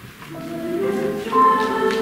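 Middle-school mixed choir beginning to sing: held notes come in softly about a third of a second in and swell into a fuller, louder chord about a second and a half in.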